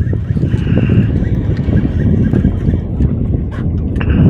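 Wind buffeting the microphone over open water, a steady low rumble, with a few light clicks.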